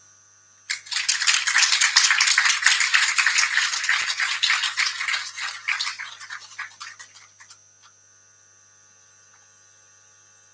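Audience applauding, starting about a second in and fading out after about seven seconds.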